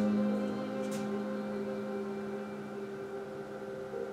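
Background music: a sustained low chord held and slowly fading.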